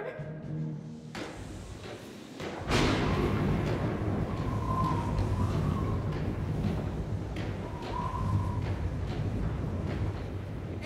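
Theatrical storm sound effect: a sudden thunder crash a little under a third of the way in, then continuous low rumbling and rushing wind with a brief whistle twice, over the show's music.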